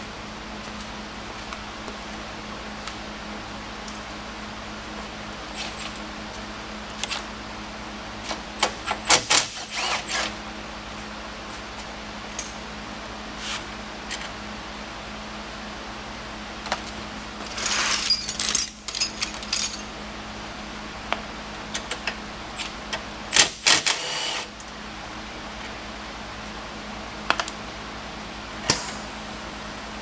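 Metal hand tools and sockets clinking and rattling in scattered bursts, with the loudest clattering about 18 to 20 seconds in and again around 24 seconds, over a steady background hum.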